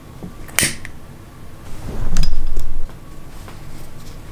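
Handling noise of battery cables and heat-shrink tubing being worked in the hands: a sharp click just over half a second in, then a loud low rumbling thump about two seconds in that lasts most of a second, with faint small clicks around them.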